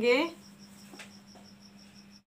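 Faint, high insect chirps repeating evenly several times a second, over a low steady hum.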